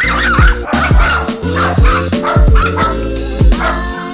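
A small dog barking and yipping over music with a heavy, regular beat.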